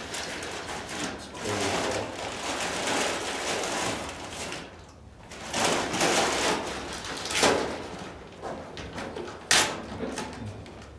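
Paper transfer tape of a vinyl sign being rubbed and pressed by hand onto a glass door, a long rustling and scraping in several strokes. A single sharp click near the end.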